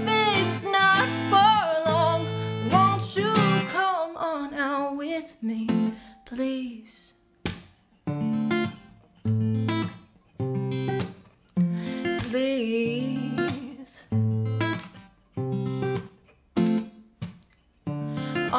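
A woman's sung phrase over acoustic guitar trails off in the first few seconds. Then comes a wordless acoustic guitar passage of short strummed chords, about one a second, each damped quickly so there are brief gaps between them.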